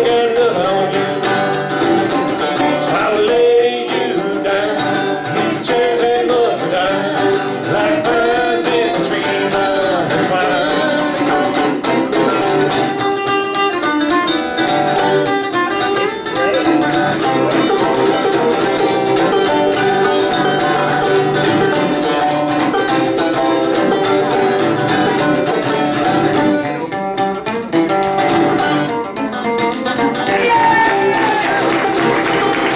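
Live acoustic country music: a resonator guitar and a banjo playing together, with no words heard.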